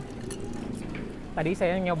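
A man's voice: a short hum at the start, then speech begins about one and a half seconds in.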